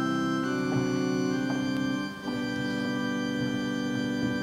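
Background music of slow, sustained organ chords, the harmony changing a little past halfway.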